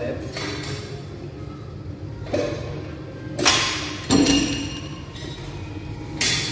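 Two knocks a little over half a second apart, about three and a half seconds in, as a gym cable machine's curl bar is let go and its weight stack comes down.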